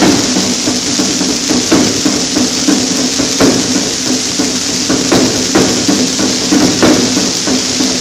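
Swing big-band record from the 1940s, played from a 78 rpm shellac disc: the horns drop out for a drum break, with steady hits a few times a second over a low held note, under a constant surface hiss.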